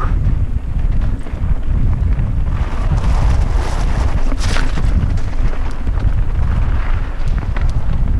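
Wind buffeting the microphone of a camera riding on a mountain biker as they descend a dirt bike-park trail, a steady low rumble with a few brief knocks from the bike over the ground.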